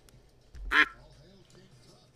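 Cartoon duck quacking sound effects from an online duck-race game, a quick run of quacks, with one much louder short sound about three quarters of a second in.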